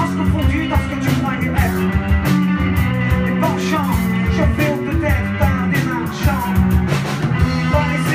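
Live rock band playing loudly: drum kit hits over electric guitar and bass, with singing.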